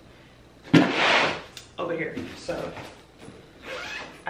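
A hard-shell suitcase being handled as its divider panel is closed over packed clothes: a sudden thud with a rustle about a second in, then lighter rustling of fabric and the case.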